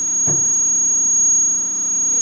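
Room tone carrying a steady low mains hum and a thin, high-pitched electrical whine. A brief soft sound comes about a quarter second in, followed by a small click.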